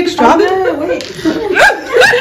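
Women's voices chatting and chuckling at the table.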